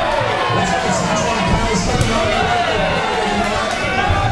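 Fight crowd shouting and cheering, many voices overlapping, with music playing underneath.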